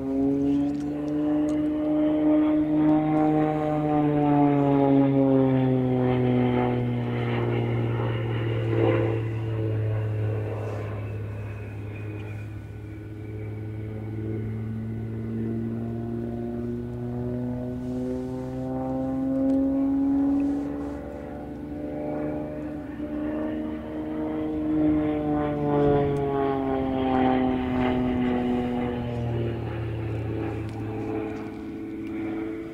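Single-engine aerobatic propeller plane flying overhead, its engine and propeller running throughout. The pitch rises and falls twice as the plane works through its manoeuvres.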